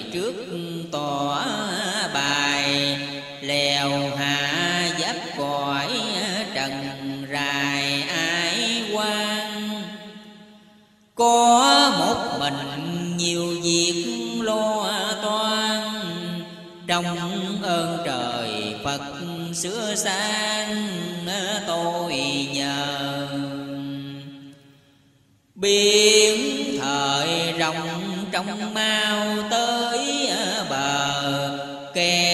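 A voice chanting Vietnamese verse in a slow, wavering melodic recitation, in long held phrases. It fades out twice, about ten seconds in and near the end, and each time starts again abruptly a second later.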